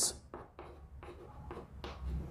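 Chalk writing on a blackboard: a run of short, quiet scratches and taps as the chalk strokes out characters.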